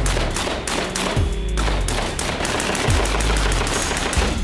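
Rapid rifle fire, many shots in quick succession, from AR-style carbines.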